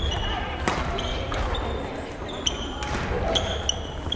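Sports shoes squeaking repeatedly in short bursts on a wooden gym floor, with sharp racket-on-shuttlecock strikes, in a large echoing sports hall with voices chattering around.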